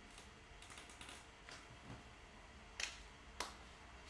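Faint, irregular clicks and taps over quiet room tone, the two sharpest close together about three seconds in.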